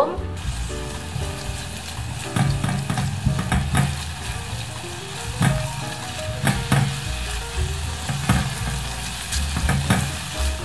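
Diced onion sizzling in melted butter in a stainless steel saucepan while being sautéed, stirred with a spatula that scrapes across the pan bottom now and then.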